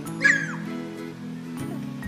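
A puppy gives one short, high whimper that bends in pitch and falls away at the end, over background music.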